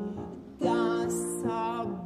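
Mezzo-soprano singing a classical art song with piano accompaniment; a louder held note with vibrato comes in about half a second in.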